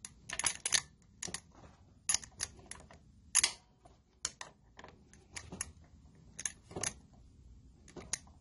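Irregular light metallic clicks and clinks, about a dozen, as locking pliers are handled and worked against metal parts at the base of a small V-twin mower engine; the sharpest click comes about three and a half seconds in.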